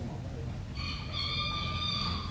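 A single high, drawn-out call that starts a little under a second in and lasts about a second and a half, over a steady low rumble.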